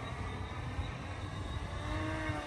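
Distant electric VTOL drone's propellers giving a faint steady whine of several tones as it switches into hover on its lift motors, over a low wind rumble on the microphone.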